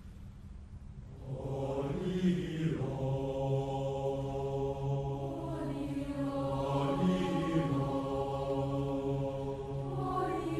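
Mixed school choir singing a sustained chord over a steady low held note. The voices come in about a second in, after a quiet start, with sliding vocal swoops around two and seven seconds in.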